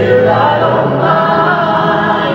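A choir of voices singing slow, held notes together, a hymn in gospel style.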